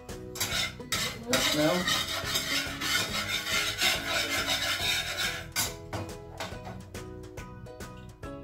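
A fork beating eggs in a bowl: a fast run of scraping clicks against the bowl, densest in the middle and thinning to scattered taps near the end. Soft background music plays underneath.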